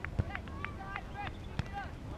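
Distant shouts and calls of voices across an open soccer field during play, with a couple of sharp knocks.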